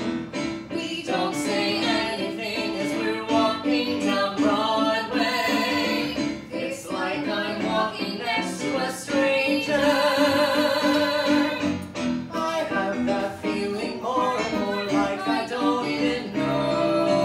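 Sung musical-theatre duet passage accompanied by a Roland Juno-DS stage keyboard played with a piano sound, with long held vibrato notes about five and ten seconds in.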